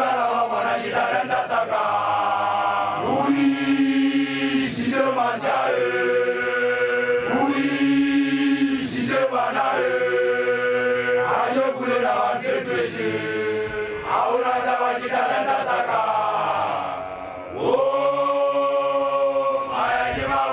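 Group of Basotho male initiates (makoloane) chanting together in chorus: long held notes in phrases of a few seconds, each bending downward at its end. The sound dips briefly near the end before a new held phrase starts.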